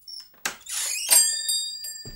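A recorded sound effect: a brief high tone, then a swishing noise that leads, about a second in, into a bright metallic chime whose ringing tones fade out slowly.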